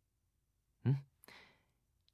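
A man's short hummed sound about a second in, trailing into a soft breathy exhale, like a sigh.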